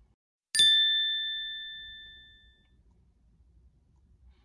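A single bright bell-like ding, struck once about half a second in and ringing out, fading away over about two seconds.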